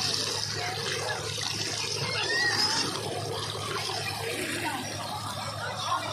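Tubewell water pouring from an outlet pipe into a concrete irrigation channel: a steady rush and splash of running water, with faint voices over it.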